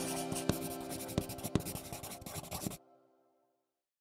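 Pencil scratching on paper as a writing sound effect, with small clicks of the lead, over fading background music. Both cut off a little under three seconds in.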